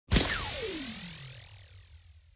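Intro sound effect: a sudden hit followed by a whoosh that sweeps down in pitch and fades out over about a second and a half.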